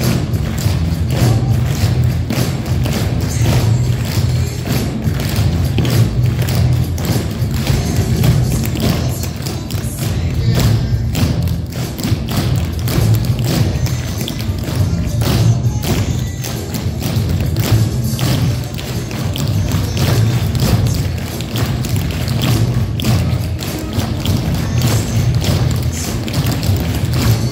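A group of tap dancers' shoes striking a wooden floor in many quick clicks, over recorded music with a strong bass.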